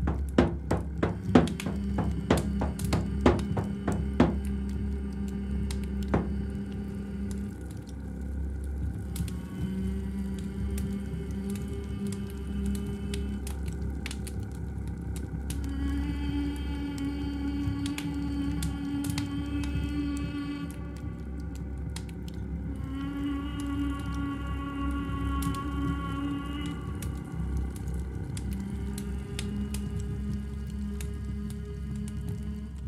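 A hand drum struck several times in the first few seconds, the hits thinning out, then long held pitched tones that swell in phrases of several seconds and shift in pitch, over a steady low drone.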